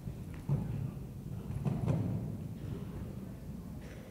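Horse's hooves thudding on the sand footing of an indoor arena while cantering, with a heavier thud about half a second in and a louder cluster of thuds around two seconds in.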